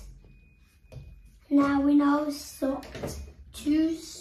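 A child's voice making a few short wordless vocal sounds: a held one about a second and a half in, then two brief ones near the end.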